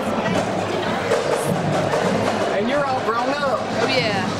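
Music playing, with people's voices talking over it, clearest near the end.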